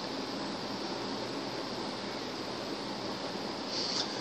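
Steady, even background hiss of room noise with no speech, and a faint, brief higher hiss near the end.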